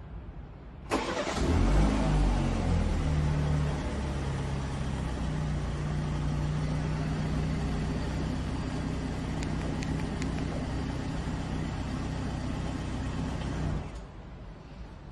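BMW 7 Series engine started remotely from its display key: it catches suddenly about a second in, runs louder for about three seconds, then settles into a steady idle.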